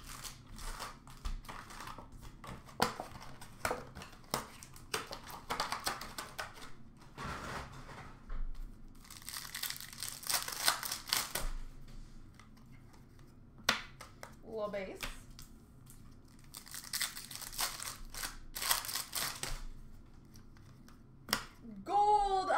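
Upper Deck hockey card pack wrappers being torn open and crinkled by hand, in irregular bursts of crackling with short pauses between them, along with the cards being handled.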